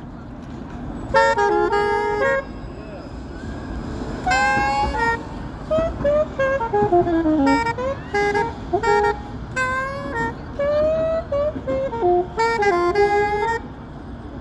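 Saxophone played solo: short melodic phrases with brief gaps between them, with a descending run in the middle, over steady low street-traffic noise.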